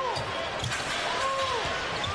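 Basketball being dribbled on a hardwood court over steady arena crowd noise, with two drawn-out tones that rise and fall, about a second apart.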